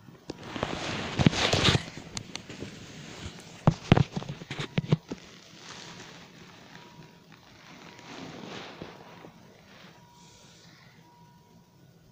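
Handling noise of a phone held right against the skin and bedsheet: rubbing and rustling on the microphone for the first two seconds, a cluster of sharp knocks and taps around four to five seconds in, then fainter rustling. A faint steady tone sounds underneath.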